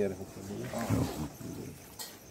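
People's voices talking, with no words made out: one voice is loudest about a second in.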